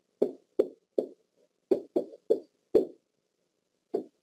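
A pen tapping and stroking on an interactive whiteboard surface while handwriting is written. It makes about ten short, uneven knocks over four seconds, one or more for each letter.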